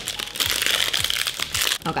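A protein bar's plastic wrapper being crinkled and peeled open by hand: a dense run of crackles and rustles.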